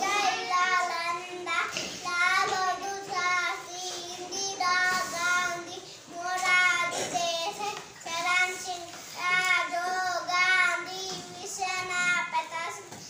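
A young boy's voice chanting in a sing-song, phrase after phrase with short pauses for breath between.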